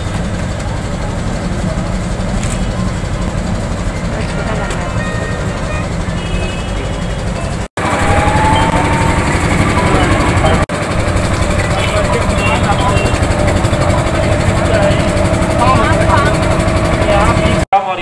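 Indistinct voices of a gathered crowd over a loud, steady low rumble, with a steady hum in the second half; the sound breaks off abruptly twice at edit cuts.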